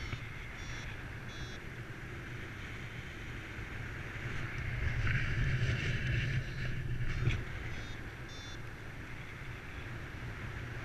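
Wind rushing over the microphone of a paraglider in flight, louder for a couple of seconds about halfway through. A paragliding variometer beeps in short high bursts now and then, the tone it gives when the glider is climbing in lift.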